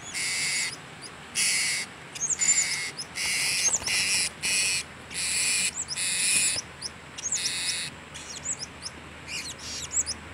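Blue-crowned hanging parrots calling: harsh, high, hissy notes about half a second long, repeated roughly once a second, with short thin chirps in between.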